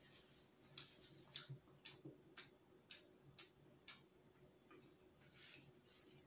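Faint closed-mouth chewing close to the microphone: a run of about seven soft wet clicks, roughly two a second, that stops about four seconds in, followed by a soft hiss.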